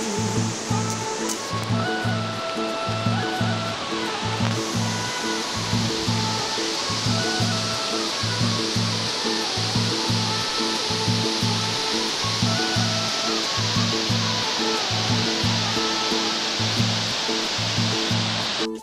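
Background music with a steady, repeating beat and a melody, laid over a continuous rush of flowing water from a mountain river.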